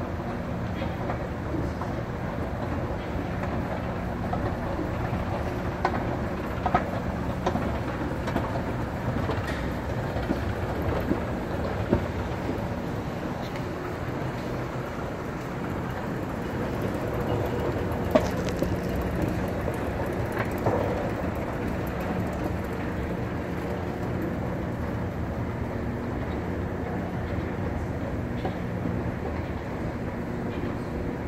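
Otis escalator running: a steady low mechanical hum of the drive and moving steps, with a few sharp clicks in the middle.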